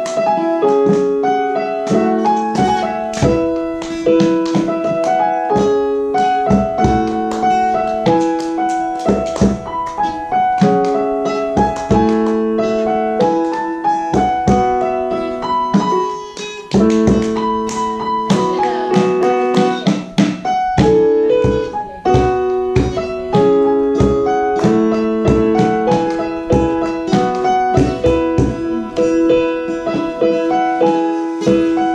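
Digital piano playing a repeating chord progression with a melody over it, with an acoustic guitar strumming along.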